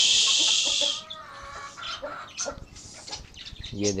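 Domestic chickens clucking around a coop, opening with a loud, harsh hissing rush that lasts about a second, followed by softer short clucks and small knocks.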